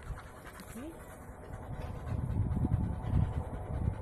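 A dog panting, louder in the second half.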